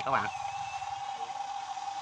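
Steady high whine of a radio-controlled model's small electric motor running at a constant speed, with a faint higher whine rising briefly in the first second.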